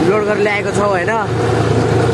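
A John Deere tractor's diesel engine running steadily while it is driven along, with a man's voice speaking over it during the first second or so.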